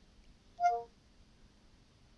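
Cortana's short two-note electronic chime from the phone's speaker, a higher tone dropping to a lower one, a little over half a second in. It sounds as the assistant finishes listening to the spoken query and begins returning results.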